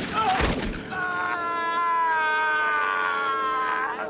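Gunshots near the start, then a stuntman's long drawn-out yell as he falls from a roof. The yell holds roughly one pitch for about three seconds and rises at the end, when it is cut off by a crash.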